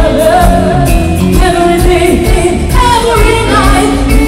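Live band music played loud through the stage sound system, with a woman singing the lead vocal over a steady beat.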